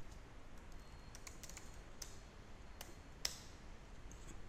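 Faint computer keyboard keystrokes: a scattering of separate key clicks, the loudest a little after three seconds in.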